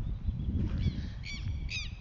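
A bird calling: a few short calls in the second half, each falling in pitch.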